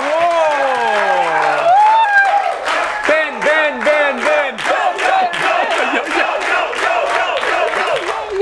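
Studio audience and hosts cheering and whooping, with long falling "whoo" calls at first, then a steady run of claps about four a second under the shouting.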